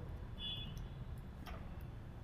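Quiet low hum with a few faint clicks and a brief high tone about half a second in.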